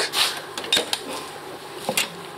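Rubbing and scuffing handling noise as the car's rear hatch is reached for. Near the end there is a sharp click as the hatch handle is pulled and the latch releases.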